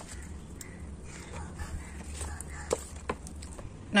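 Quiet background with a steady low hum and a few light clicks or taps in the second half.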